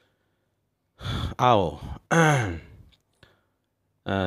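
A man's voice making two drawn-out, breathy vocal sounds after a pause of about a second, each falling in pitch, like sighs or long drawn-out words.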